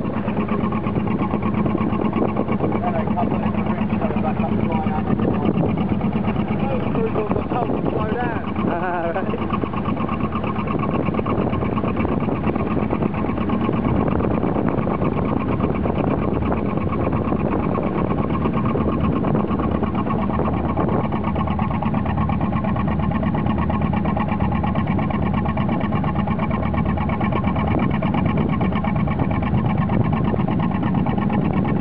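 Narrowboat engine running steadily under way on choppy water, heard from on board, with voices briefly audible a few seconds in.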